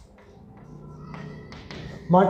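Chalk tapping on a blackboard as numbers are written: about four sharp taps roughly half a second apart.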